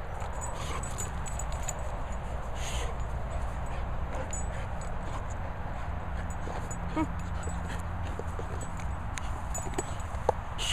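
A boxer dog snuffling and mouthing a plush toy close by, with a few short sniffs and small clicks, over a steady low rumble.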